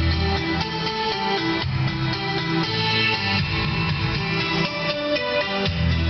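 Music with guitar playing from an MP3 player through a Toyota 4Runner's factory stereo on its auxiliary input, heard from the cabin speakers.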